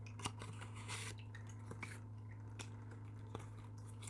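Tarot cards being shuffled and handled: a few soft card snaps and a brief rustling riffle about a second in, faint, over a steady low hum.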